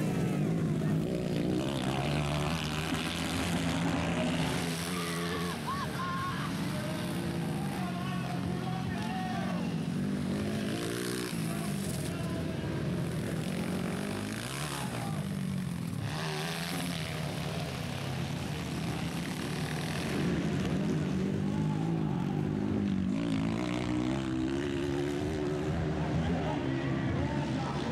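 230cc dirt-bike engines racing, their pitch rising and falling over and over as the throttle is opened and closed through the turns.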